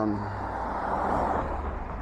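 A car driving past on the road: tyre and engine noise that swells to a peak about a second in and then eases off, over a steady low rumble of traffic.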